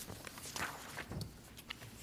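Loose sheets of paper rustling and being set down on a table, heard as a few short rustles and light taps.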